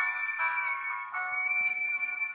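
Instrumental intro of a recorded ballad playing through laptop speakers: a few sustained notes held as chords, thin and with no bass, just before the vocal comes in.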